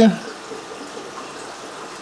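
Steady wash of bubbling, trickling water from the aquarium tanks' filtration, even and unbroken.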